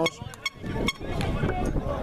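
Background murmur of people's voices from a gathered group, with two sharp clicks in the first second.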